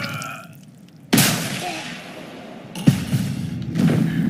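Rifle gunshot sound effect: a sudden loud shot about a second in with a long fading tail, then a second sharp hit near three seconds.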